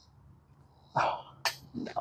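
A man's short breathy exclamation about a second in, reacting to a putt, followed by a single sharp click and the start of a spoken word near the end.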